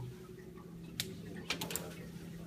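Steady low mechanical hum of a running lab wet cooling tower unit, with a few short sharp clicks about a second in and again around a second and a half in.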